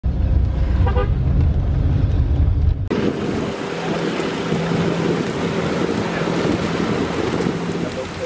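Low road rumble inside a moving car, with a short car-horn beep about a second in. At about three seconds it switches to a passenger boat under way: a steady engine drone beneath a loud, even rush of water and wind.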